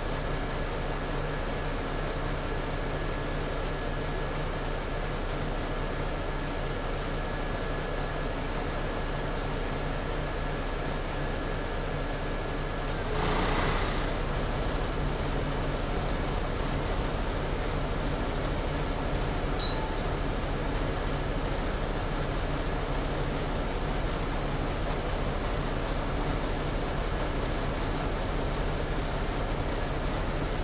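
Steady hum inside a city bus cabin, the engine and air conditioning running evenly. A short hiss of air sounds about thirteen seconds in.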